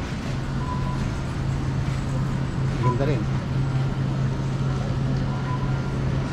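Supermarket background sound: a steady low hum with a short voice about three seconds in, and three short faint beeps spread across the moment.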